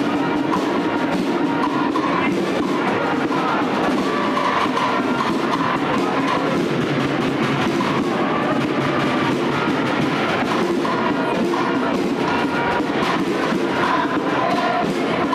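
Processional march music with drums, playing steadily and loudly.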